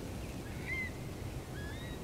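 A few faint, rising whistled calls of far eastern curlews, starting about half a second in, over a low steady background rumble.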